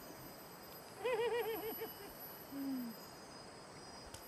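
A pitched, quavering call: a run of about six wavering notes lasting about a second, starting about a second in, followed by a short, lower note that falls slightly.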